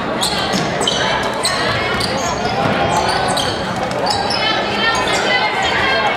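Basketball game on a hardwood gym floor: sneakers squeaking again and again as players cut and stop, a ball bouncing, and voices from players and spectators throughout.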